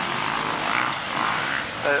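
Enduro motorcycle engine running at a steady note as the bike rides past on the dirt course.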